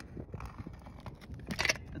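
Small clicks and crackle of a caulk gun being worked as it lays roofing sealant around a rubber pipe boot, with a brief cluster of louder scraping clicks about one and a half seconds in.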